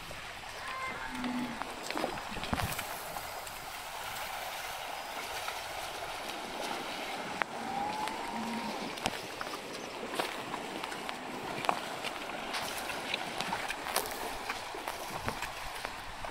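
Shallow river water running over stones, with scattered splashes and sharp knocks from cattle hooves wading through the water and stepping on rocks.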